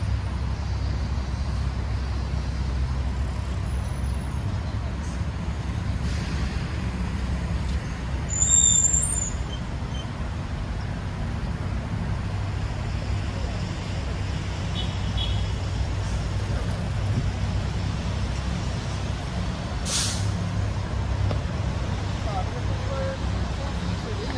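Steady low rumble of road traffic. A brief high-pitched squeal stands out about eight and a half seconds in, and there is a sharp click near the end.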